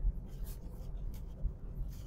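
Low, steady road and engine rumble inside a moving car's cabin, with faint scratchy rustling.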